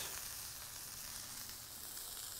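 Raw lamb patty frying in a little oil on a hot cast-iron griddle: a low, steady sizzle.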